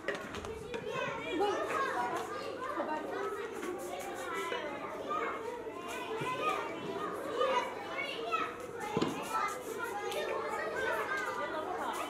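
Many children's voices at once, shouting and calling out over each other in a steady hubbub while a team game is raced.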